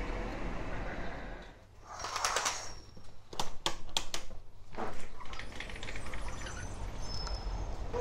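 A curtain drawn back: a short swish about two seconds in, then a run of five or six sharp clicks. Before and after it there is a steady background hiss, with a few faint high chirps near the end.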